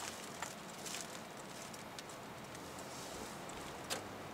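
Steady road and engine noise inside the cabin of a second-generation Toyota Vellfire minivan with a 2.5 L 2AR-FE four-cylinder and CVT, driving along. A few faint clicks come through the noise.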